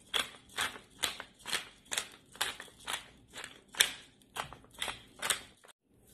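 A hand pepper mill being twisted over pork chops, grinding peppercorns in short rasping crunches, about two a second. It stops shortly before the end.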